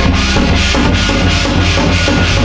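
Korean shamanic gut ritual music, loud and continuous, with steady drumming.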